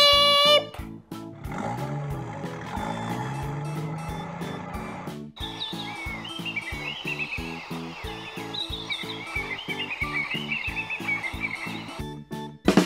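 Background music with a steady beat, mixed with wild animal calls: a low, drawn-out call from about a second and a half in, then a run of short, high chirping calls from about five seconds in.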